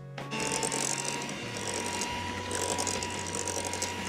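Electric hand mixer switching on about a third of a second in and running steadily with a thin whine, its beaters working an egg into creamed butter and sugar for cake batter.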